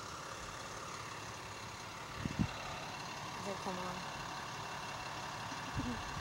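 Steady hum of road traffic and vehicles around a roadside parking lot at night. There are two soft thumps a little after two seconds in, and a faint voice in the middle.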